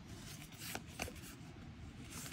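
Faint rustle and soft flicks of paper trading cards being slid one by one from the front of a small stack to the back in the hands, with a couple of light flicks about a second in.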